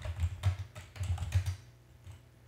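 Typing on a computer keyboard: a quick run of keystrokes that stops about one and a half seconds in.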